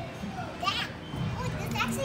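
Children's voices in the background, with short high-pitched squeals or calls about two-thirds of a second in and again near the end.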